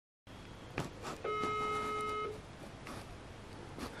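Phone ringback tone through a smartphone's speaker: one steady beep about a second long, the European calling tone heard while an outgoing call rings, with a couple of faint clicks before it.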